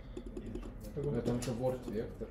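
Typing on a computer keyboard: a quick run of key clicks in the first second, followed by a brief murmur of a man's voice.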